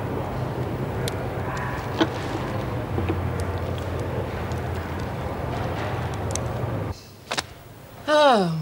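A steady low droning hum with a few faint clicks. It cuts off suddenly about a second before the end, followed by a single sharp click.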